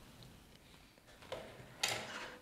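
Quiet room with tea things being handled on a tea tray: a soft knock a little past halfway and a sharper click near the end.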